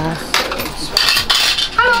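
Clinking and clattering of metal cutlery and dishes: a quick run of sharp clinks over about a second and a half, with a voice starting near the end.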